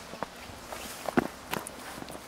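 Footsteps and shoe scuffs on an asphalt path as several people get up from sitting and walk off: a few irregular steps, the loudest a little over a second in.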